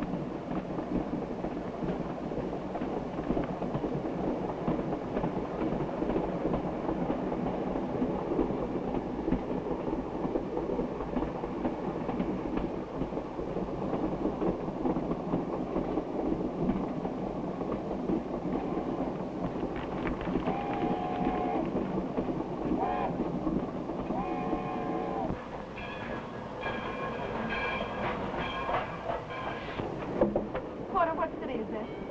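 Passenger train running on the rails, a steady rumble with the rhythmic clatter of wheels over rail joints. About two-thirds of the way through, the locomotive whistle blows: two short blasts and then a longer one, followed by higher, briefer tones, as the train approaches a station stop.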